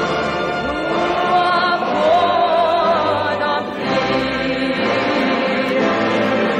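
A large choir singing with an orchestra, voices holding long notes with a wavering vibrato.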